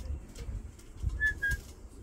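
A green parrot right at the microphone giving two short high whistled chirps about a second in, over soft low bird sounds and faint bumps and clicks.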